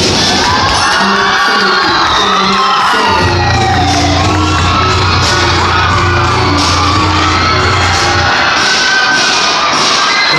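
Loud cheer-dance mix music in a large gym, a deep steady bass note coming in about three seconds in and dropping out about eight seconds in, with sweeping pitch glides in the mix. A crowd of students shouts and cheers over it.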